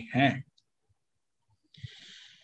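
A man's voice ends a word, then near silence broken by a few faint small clicks. Near the end comes a short soft hiss, like a breath drawn before speaking.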